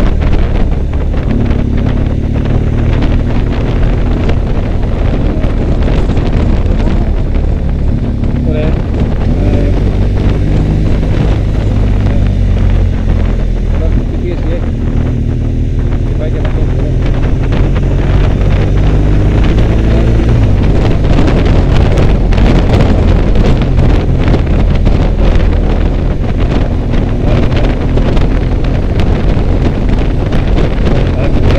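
Motorcycle riding with heavy wind noise buffeting the mounted camera's microphone over the engine, whose note rises and falls slowly as the bike changes speed through the bends.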